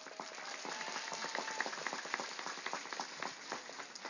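Audience applauding: faint, scattered clapping that swells a little and thins out near the end.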